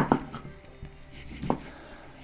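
Kitchen knife slicing a lemon on a wooden cutting board: a few sharp knocks of the blade meeting the board, the loudest right at the start and another about a second and a half in.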